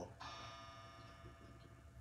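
A chiming clock ringing faintly: one struck note with many overtones starts just after the beginning and slowly fades.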